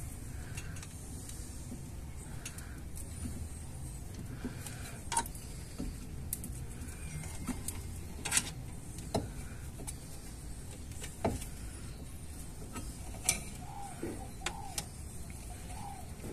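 Scattered light clicks and taps as a length of insulated wire is wrapped around a disc-brake caliper to hang it from the suspension, over a steady low background hum.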